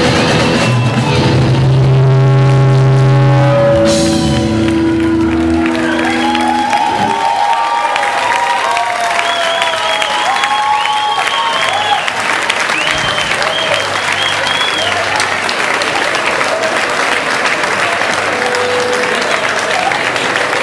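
A rock band's last held chord rings out and stops about six seconds in, and the audience then applauds and cheers for the rest of the time.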